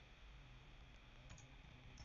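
A few faint computer keyboard keystrokes, mostly in the second half, over near-silent room tone.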